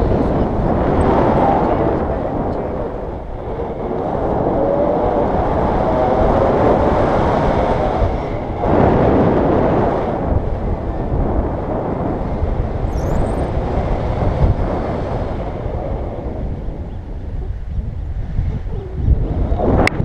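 Wind rushing over an action camera's microphone during a tandem paraglider flight, loud and rising and falling in gusts. A brief sharp knock on the camera near the end.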